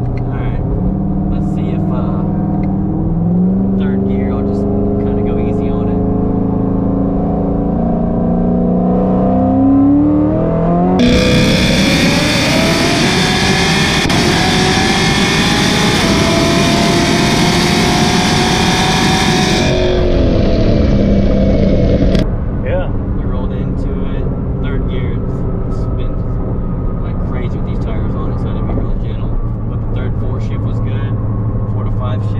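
Supercharged V8 of a 2019 C7 Corvette Z06 accelerating, heard from inside the cabin with its pitch rising. About eleven seconds in, the sound switches to a microphone at the exhaust tips as the engine revs up under a full pull. A few seconds before the end it returns to the cabin, running at a steadier highway drone.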